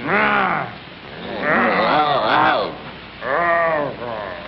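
A cartoon character's voice gives three drawn-out, wavering wails that rise and fall in pitch: a short one at the start, a longer one in the middle and a short one near the end.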